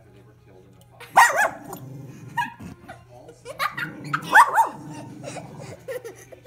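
Small wire-haired terrier barking at its own reflection in a mirror, in two bursts: one about a second in and a longer one around four seconds in.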